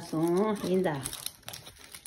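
Packaging wrap on a large toy surprise egg crinkling as it is torn and peeled off by hand, with a few small crackles, heard plainly once a voice singing 'da, da' stops about a second in.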